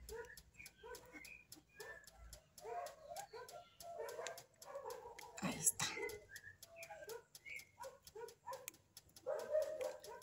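Light clicks and taps of plastic bottle caps being handled and fitted onto a flexible plastic branch, under faint background voices.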